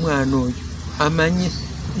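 A man's voice speaking in two short phrases, over a steady low hum.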